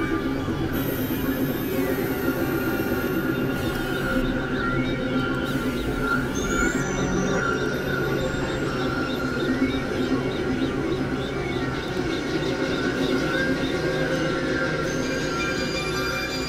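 Experimental electronic drone music from synthesizers (Novation Supernova II, Korg microKorg XL): a dense, steady layered drone of many held tones, with short high gliding, squeal-like tones coming and going over it.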